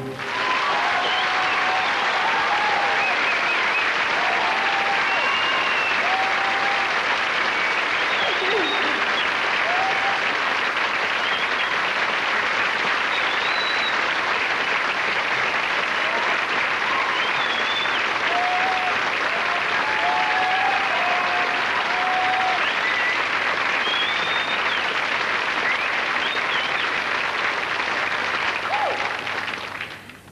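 Studio audience applauding steadily, with short whistles and calls scattered through it; the clapping dies away near the end.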